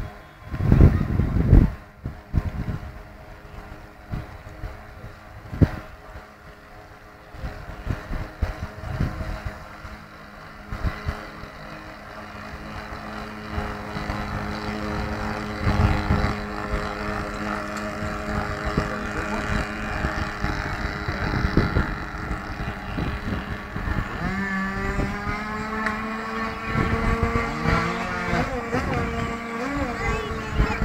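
Model pilot boat's motor running on the water with a steady hum that grows louder about halfway through, then rises in pitch near the end. Wind gusts on the microphone at the start.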